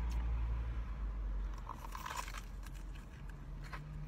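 Crunchy bites into a fried, potato-coated Korean corn dog, the crisp crackling clustered about two seconds in, over a steady low rumble in a car's cabin.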